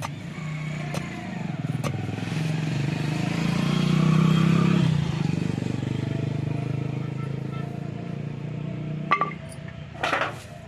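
A motor vehicle's engine running steadily, swelling to its loudest about four seconds in and then fading, like a vehicle passing by. A few sharp knocks sound over it, two in the first two seconds and one about nine seconds in.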